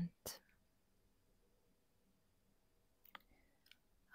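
Near silence in a pause between whispered phrases, with the end of a whispered word at the very start. A single sharp mouth click follows just after, and a few faint clicks come about three seconds in.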